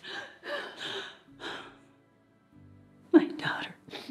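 A woman crying during an embrace: breathy sobs and choked, half-whispered vocal sounds, then a loud voiced sob about three seconds in. Soft sustained film-score music sits underneath.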